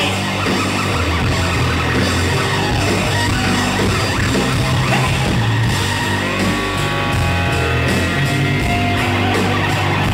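Rock band playing live in an instrumental stretch without vocals: electric guitars and drums at a steady, loud level, with sharp drum or cymbal strikes coming through from about halfway.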